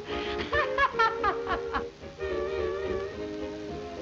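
A man laughing in quick bursts over background music for about two seconds, then the music alone, playing held chords.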